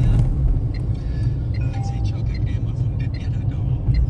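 Steady low rumble of road and tyre noise heard inside the cabin of a small VinFast VF3 electric car driving on a wet road, with no engine note, and faint light ticks now and then.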